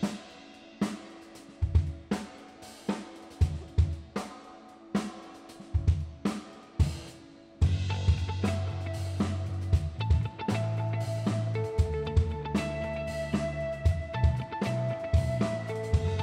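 Live rock band starting an instrumental intro: a drum kit plays alone at first, with separate kick and snare hits and cymbals. About seven and a half seconds in, bass guitar and electric guitar come in together with the drums, and the sound gets suddenly louder and fuller.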